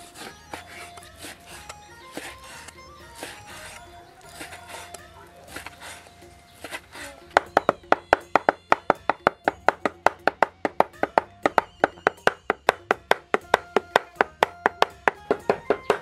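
Steel cleaver slicing pork belly on a wooden chopping block with soft, uneven strokes. About seven seconds in it turns to rapid, even chopping, several sharp knocks a second, as the pork is minced for a meat filling.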